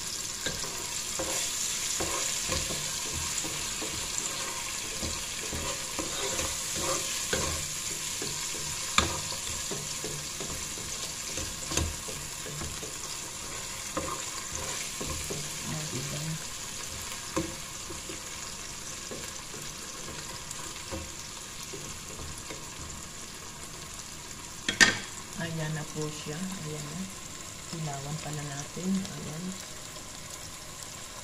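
Meat and onions sizzling as they brown in a stockpot, with a spatula stirring and now and then knocking against the pot; the loudest knock comes about 25 seconds in.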